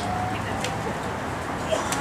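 Steady low street rumble with a couple of brief soft calls, one near the start and one near the end, and a few light clicks.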